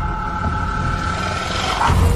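Trailer sound design: a deep, steady rumble with two held high tones above it that stop shortly before the end.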